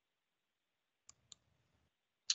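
Near silence, broken by two faint, short clicks about a quarter of a second apart, a little over a second in.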